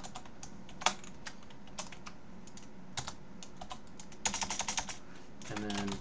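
Computer keyboard being typed on: scattered single keystrokes, then a quick run of keystrokes about four seconds in.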